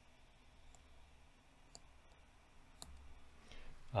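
A few faint, scattered clicks of a stylus tapping on a tablet screen while writing.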